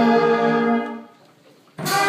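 Church brass band with trumpets, trombones, tuba and bass drum holding a chord that dies away about a second in. After a short pause the whole band comes back in suddenly and loudly near the end, with a bright percussion hit on the entry.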